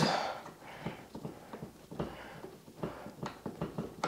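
Hand-turned Phillips screwdriver tightening an in-ceiling speaker's mounting screw: a run of faint, irregular clicks and creaks as the screw turns and the speaker's clamp tabs draw up against the drywall.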